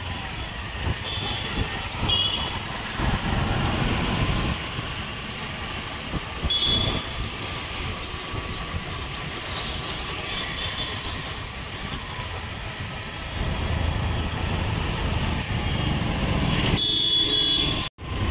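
Street traffic noise: vehicles running past with a steady rumble, heavier twice, and a few short high horn toots.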